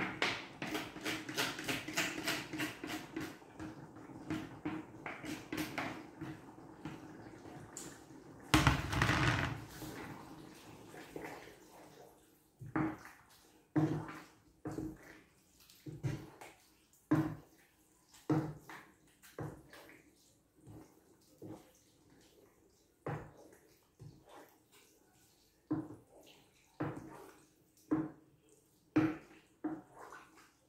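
Cooked spaghetti being scraped out of a plastic colander into a pan with a utensil: a dense run of clattering and scraping, with a short louder rush of noise about nine seconds in. Then the pasta is stirred in the pan, the utensil knocking against it about once a second.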